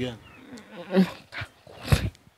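A woman crying: short, pitched sobbing sounds, one about a second in and another near the end.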